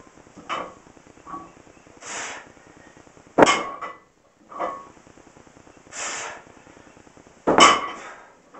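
A 135-lb loaded barbell set down on a wooden floor between deadlift reps: two loud metallic clanks of the weight plates, about four seconds apart, each followed about a second later by a lighter clink as the plates settle.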